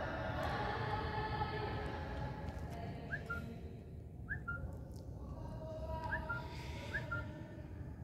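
A pause between recited phrases: the echo of the last sung note fades out over the first couple of seconds, leaving a low, steady hum. Four short whistle-like chirps come from about three seconds in, each a quick upward note settling on a brief steady tone.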